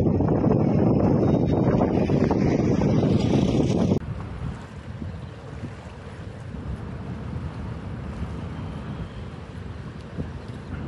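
Loud, steady rush of floodwater pouring through the open crest gates of a large dam spillway, mixed with wind on the microphone. About four seconds in it cuts off abruptly to a quieter, even rush of wind and choppy water at the reservoir's edge.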